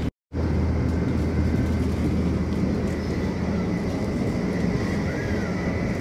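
Steady cabin noise inside the Haramain high-speed train: a low rumble and hum under a faint, even high whine. The sound drops out for a moment just after the start.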